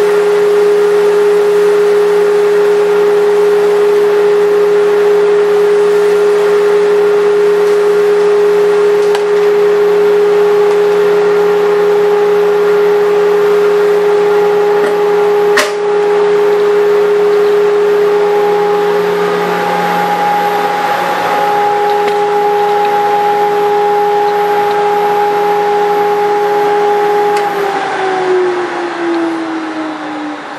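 A 1.5 HP Penn State Industries dust collector running steadily with a strong, even impeller whine and hum, with one sharp click about halfway through. Near the end its pitch falls and the sound fades as the motor is switched off and winds down.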